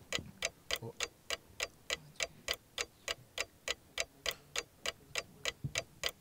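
Quiz countdown clock ticking evenly, about three ticks a second, while the team's answer time runs.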